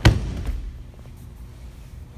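A body landing on a grappling mat as a man is turned over onto his back: one heavy thud at the start, then a softer thump about half a second later.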